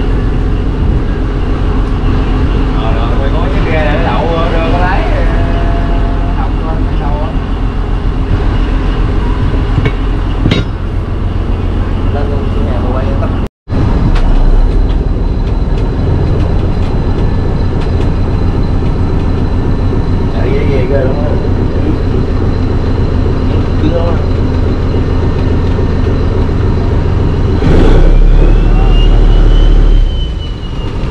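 A fishing trawler's inboard diesel engine running steadily under way, heard from on board as a loud, constant low drone. Near the end the low rumble swells louder as the engine control lever is worked.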